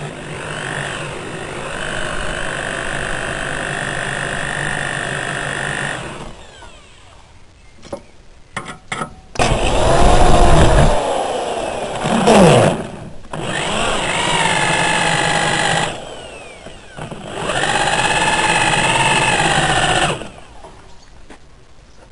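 Hand-held electric drill boring holes in a square metal bar clamped in a bench vise. It runs in several bursts of a few seconds with short pauses between them, and its whine bends in pitch as the motor speeds up and slows down.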